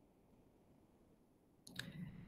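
Near silence, then a few faint clicks near the end.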